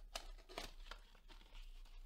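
Faint crinkling and rustling of a trading-card blaster box's plastic wrap and cardboard as it is handled and opened, in a few short scattered bursts.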